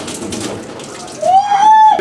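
Water spraying from a garden hose into a stainless-steel sink, then about a second in, a loud, high-pitched held vocal cry that rises briefly and holds until the end.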